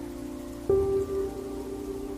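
Soft background music of slow, sustained notes, with a new note struck about two-thirds of a second in that then fades slowly.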